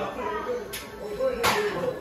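Footsteps going down a wooden staircase: two sharp steps on the treads, about 0.7 s apart, with faint voices or music behind.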